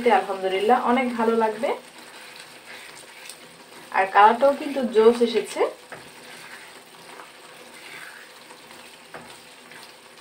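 Creamy milk-based pasta sauce sizzling in a non-stick pan while a spatula stirs it, a low steady sizzle. A voice speaks briefly at the start and again about four seconds in.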